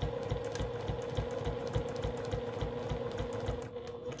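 Domestic sewing machine running at a steady speed, its motor humming under an even rhythm of needle strokes while it stitches binding through a quilted table runner.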